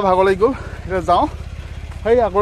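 A man's voice loudly calling out a repeated sing-song phrase, dropping out about a second and a half in. Under it runs a steady low rumble with a regular pulse.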